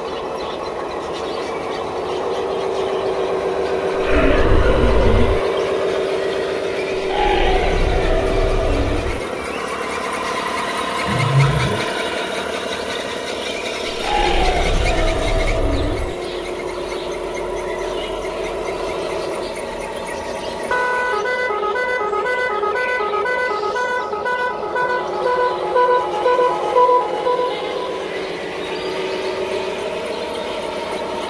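Truck horn and engine sounds: a held horn tone with several low rumbling bursts. In the last third comes a fast, even series of short beeping tones lasting about seven seconds.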